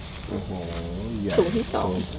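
Speech: a voice talking in Thai over a steady low hum.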